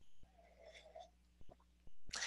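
Very faint room tone in a pause between sentences: a low steady hum with a few soft clicks.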